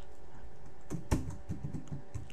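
Computer keyboard typing: a handful of separate keystrokes, starting about a second in and running to the end, over a faint steady hum.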